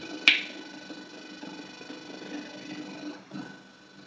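A single sharp click about a quarter of a second in, then a low steady room hum with faint steady tones.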